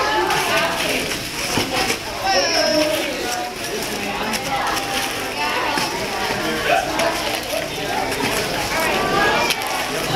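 Many people talking at once in a crowded hall, children's voices among them: a steady hubbub of overlapping chatter.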